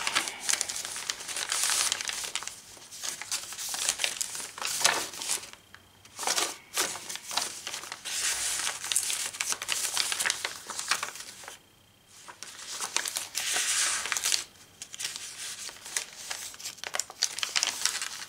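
Paper rustling and crinkling as the pages and paper flip-ups of a thick handmade journal are turned and folded open, in stretches with short pauses about six and twelve seconds in.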